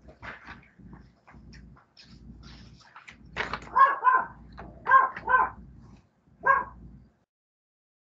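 Short, high-pitched yelps from an animal, in two pairs and then one more, over a faint low rumble; all sound cuts off suddenly about seven seconds in.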